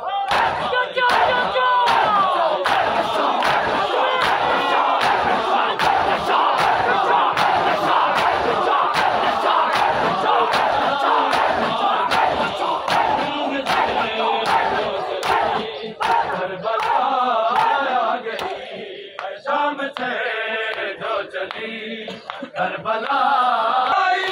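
A crowd of men chanting a noha in unison over the regular, sharp slaps of matam, open hands striking bare chests in a steady beat. About two-thirds of the way through, the massed chanting thins and a clearer lead voice singing the noha comes through over the slaps.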